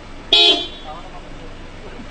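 A single short, loud horn toot about a third of a second in, fading quickly.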